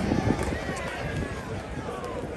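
Low background murmur of faint voices and outdoor hubbub in a lull between a speaker's sentences at an open-air gathering, well below the level of the nearby speech.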